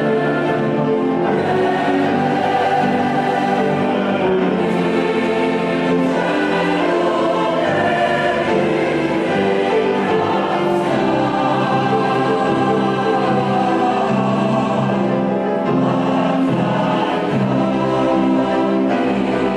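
A choir singing a Christmas song with instrumental accompaniment, at a steady, full level.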